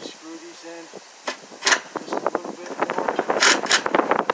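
Cordless impact driver driving a screw through the outer fascia board into the board behind it, running in short bursts with sharp rattling hits about a third of the way in and again near the end.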